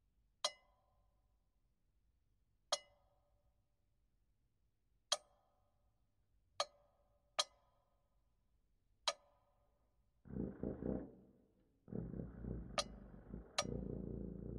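Sharp glass clinks, each with a short ringing tail, come one to two and a half seconds apart, six times. About ten seconds in, a low rumbling sound sets in and keeps going, with two more clinks over it near the end.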